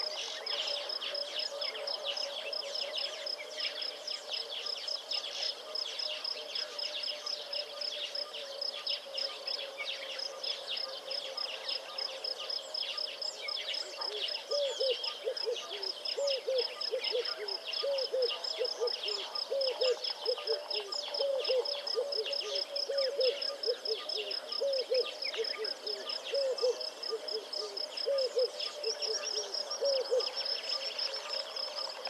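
Wild natural soundscape: insects trill with a steady, fast, high pulse while birds chirp. From about halfway a series of low hooting calls starts up, each one dropping in pitch and repeating about twice a second.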